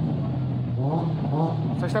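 A person talking over a steady low bass hum that shifts in pitch every second or so.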